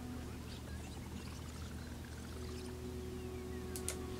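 Quiet room tone: a steady low hum with faint thin tones sliding up and down, and a brief click just before the end.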